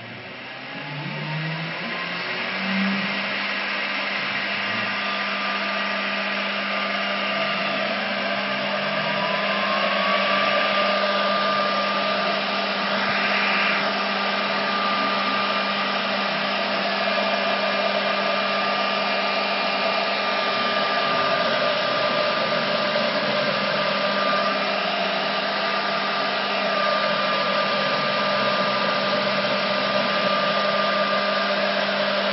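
Spindle motors of a Northwood CNC router starting up: a whine rises and levels off in the first two seconds, a second rising whine follows about eight to ten seconds in, and then they run steadily over a rushing hiss.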